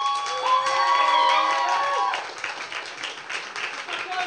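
An audience applauding, with a few voices holding long cheers over the first two seconds. The cheers stop about two seconds in and the clapping carries on.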